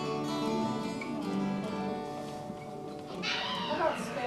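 Acoustic guitars played together, their notes ringing and dying away. Near the end a person's voice with sliding pitch cuts in.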